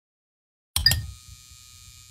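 Animated logo sound effect: silence, then about three-quarters of a second in a sudden deep hit with bright high ringing tones, dying away into a quiet low hum.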